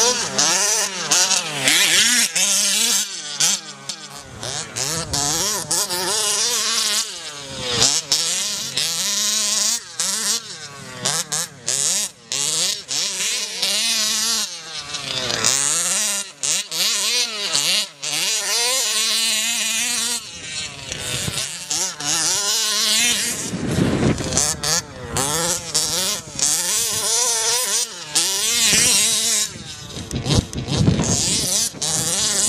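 Small two-stroke petrol engine of an HPI Baja large-scale RC buggy, revving up and down again and again as it is driven, its pitch rising and falling every second or two.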